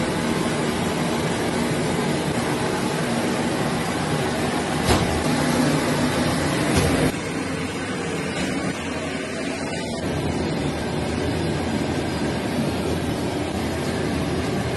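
Steady hum of factory machinery running, with a couple of brief knocks; the noise drops slightly about seven seconds in.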